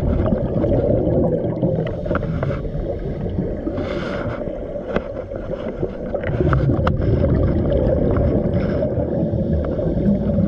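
Underwater sound picked up by a camera during a scuba dive: a steady low rumble of water noise with small clicks and crackles, and a short hiss of scuba exhaust bubbles about four seconds in and again, more faintly, near the end.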